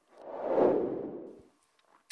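Whoosh transition sound effect: one noisy swell that rises and fades away over about a second, marking the move into a new segment.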